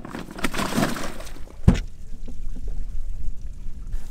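Water splashing and pouring as a live bass is lowered into a plastic weigh-in bag, with one sharp knock about a second and a half in.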